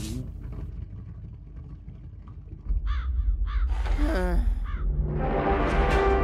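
A deep rumble that jumps suddenly louder about two and a half seconds in. Over it comes a run of short, falling, caw-like squawks, and music swells in near the end.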